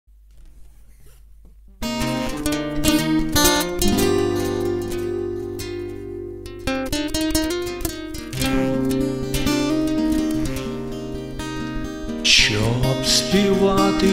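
Acoustic guitar playing the introduction to a song, with chords beginning about two seconds in after a faint start. A man's singing voice comes in near the end.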